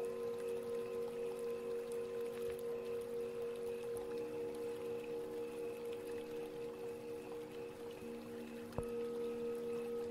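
Singing bowls ringing in sustained, wavering tones. A new lower tone joins about four seconds in and another near eight seconds, and a fresh strike comes near nine seconds.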